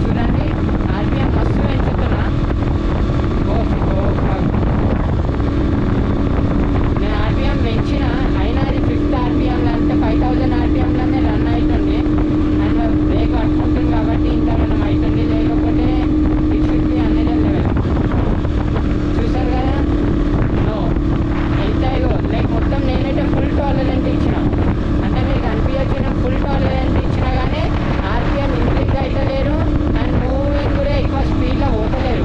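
Sport motorcycle engine running at a steady cruise with wind rushing over the microphone. The engine hum is strongest through the middle and eases a little after that, with people talking under it.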